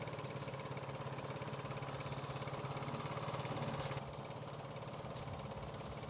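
A motor engine running steadily with a fast, even throb. It changes tone and drops a little in level at a cut about four seconds in.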